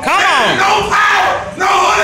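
Several voices shouting in a church, loud and drawn-out: a long falling cry at the start, then held calls.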